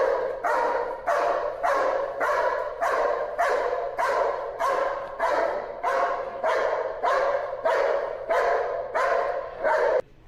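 German shepherd barking steadily and rhythmically, about two barks a second, at a helper with a stick during protection training.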